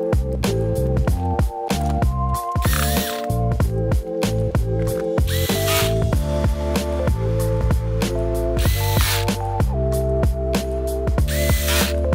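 Background music with a steady beat. Over it, a small cordless electric screwdriver whirs briefly four times, about every two and a half to three seconds, driving screws into a laptop's bottom cover.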